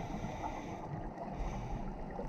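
Steady, muffled low rumble of water noise picked up by a GoPro Hero6 underwater, with a faint hiss above it.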